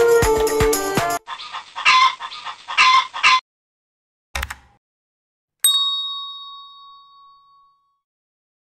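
Background music with a steady beat cuts off about a second in, followed by a few short sounds and a brief thump. Then a single bell-like ding rings and fades out over about two seconds, the sound effect of an end-card subscribe/notification animation.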